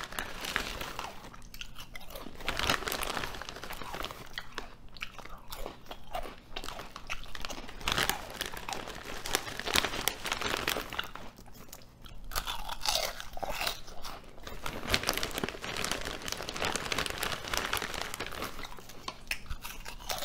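Ruffles ridged potato chips crunched and chewed close to the microphone: a steady run of crisp, irregular crunches with brief lulls between mouthfuls.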